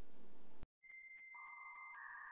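Faint room tone that cuts off abruptly; after a moment's silence, a steady high electronic beep tone sounds, joined about half a second later by a lower steady tone, the synthesized sound effect of an animated loading-bar graphic.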